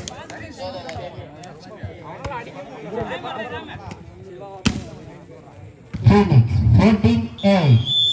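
Chatter of players and onlookers around an outdoor volleyball court, with a single sharp smack of a volleyball a little past halfway. Near the end a man talks loudly close by, over a brief high whistle tone.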